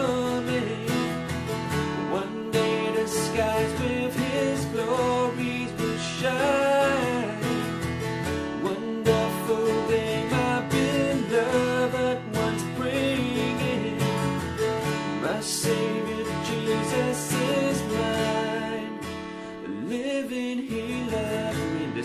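Steel-string acoustic guitar, capoed at the second fret, strummed steadily through chord changes while a man sings along.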